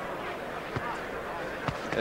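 Boxing arena crowd murmur with two short thumps about a second apart; the later one, near the end, is a stiff jab landing on the opponent's gloves.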